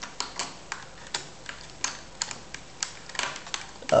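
Irregular light clicks and scrapes of a USB flash drive being fumbled against a Dell laptop's USB port, not yet going in.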